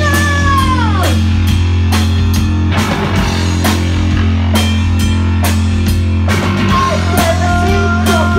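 Live punk rock band playing loud: drum kit beating steadily over electric bass. A woman's held sung note falls away about a second in, and her singing comes back near the end.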